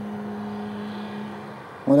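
A steady low hum over a faint hiss, easing off shortly before the end.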